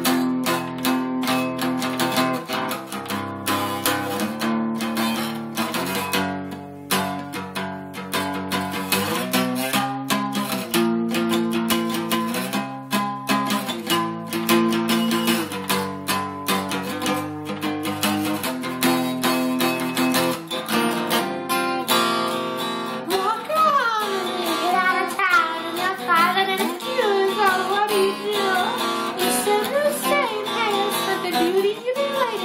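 Acoustic guitar strummed in an improvised piece, the chords changing every second or two. About two-thirds of the way through, a man's voice comes in singing over the guitar, its pitch sliding and wavering.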